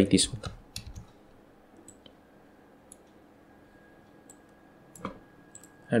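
A handful of sharp clicks from a computer mouse and keyboard, spaced irregularly, the loudest about five seconds in.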